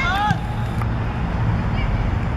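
Wind rumbling on the camera microphone on an open football pitch, with a short high-pitched shout from a child's voice right at the start.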